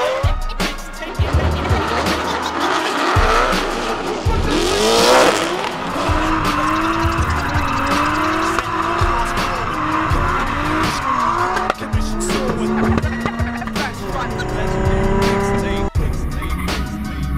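Drift cars' engines revving up and down while their rear tyres squeal and skid, mixed with a hip-hop music track with a steady bass beat.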